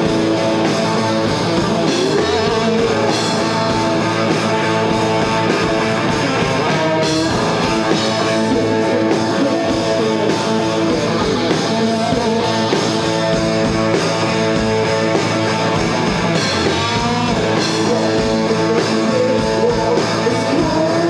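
A live rock band playing loud, steady hard rock: electric guitars over a drum kit.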